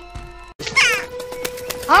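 Film soundtrack across a scene cut: a short high-pitched cry about three-quarters of a second in, over a long held music note, then a man's voice starts at the end.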